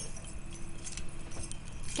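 Light metallic jingling and clinking of bangles and jewellery moving on a woman's wrists as she handles things.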